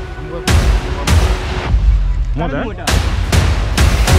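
Dramatic intro music punctuated by about five heavy, sudden hits with a deep low end, spaced unevenly. Near the middle, in a gap between hits, a brief wavering sweep rises and falls.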